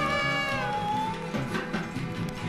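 Instrumental hip-hop beat built on a sampled melodic line. A pitched note slides up, holds, and then bends down about half a second in, over a repeating bass line.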